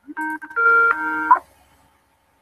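Electronic call-software chime: a short run of steady multi-tone notes, changing pitch twice and lasting about a second and a quarter before cutting off. It is the alert as a caller's voice call comes in or connects.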